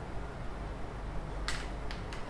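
Quiet room tone with a steady low hum, broken by two brief faint noises about one and a half seconds in and again near the end.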